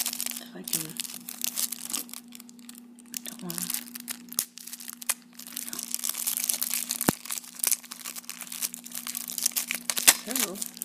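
Clear plastic shrink wrap crinkling and crackling as it is peeled off a stack of trading cards, in a run of quick crackles that goes quieter for a few seconds in the middle, with a single sharp click about seven seconds in.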